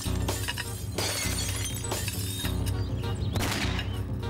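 Leaded glass window panes being smashed in, several sharp crashes of breaking glass in a row, over dramatic background music.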